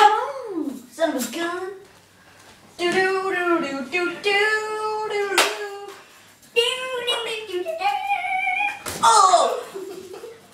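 A person's voice making wordless drawn-out sounds, some held on one note and some sliding up and down, in several separate bursts. It is broken by a few sharp hits: one at the start, one about midway and one about nine seconds in.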